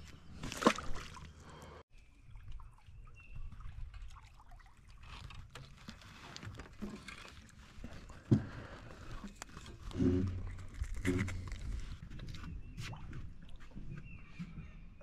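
Water sloshing and dribbling as a hooked crappie is lifted out of the lake on a rod and line, among scattered clicks and knocks of tackle and boat handling, with two sharp knocks standing out.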